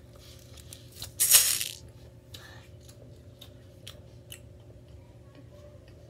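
A pin art toy's plastic pins sliding and clattering in one short, loud rush about a second in, followed by scattered small clicks and taps.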